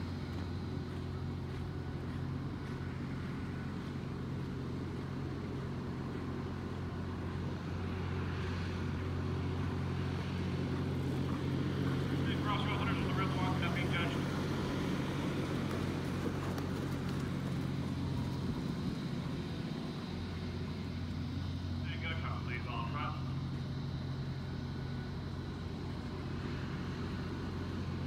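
A steady low motor hum, like an engine running nearby, with faint voices twice.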